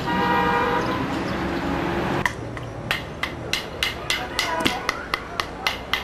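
A short horn toot lasting about a second, followed a little later by a run of sharp clicks, about three a second.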